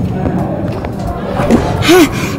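Indistinct voices over background music, with a steady low rumble underneath and a brief voice sound near the end.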